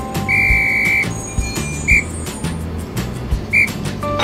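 A high, clear whistled note held for about two-thirds of a second near the start, then two short whistle blips at the same pitch, over background music with a steady beat.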